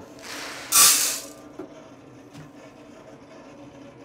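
About 3.5 lb of green coffee beans poured from a bucket into the steel hopper of a drum coffee roaster: a rushing rattle for about a second, loudest near the end of the pour. The preheated roaster then runs on with a low, steady hum.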